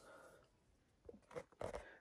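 Near silence: room tone, with a few faint soft clicks in the second half.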